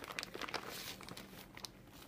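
Faint crinkling of a plastic bag of crumbled cheese being handled, a few soft irregular rustles.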